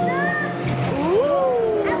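A voice-like pitched sound that slides up about a second in and then slowly falls, like a drawn-out meow, over steady background music.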